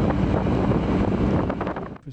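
Steady rumble of a moving military vehicle, with wind buffeting the microphone. It cuts off suddenly near the end.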